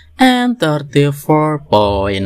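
A man's voice speaking, reading out a chapter number.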